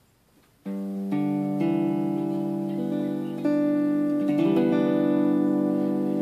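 Hawaiian lap steel guitar in G6 tuning, its strings picked with fingerpicks one after another and left ringing together as a chord, which shifts about three and a half seconds in.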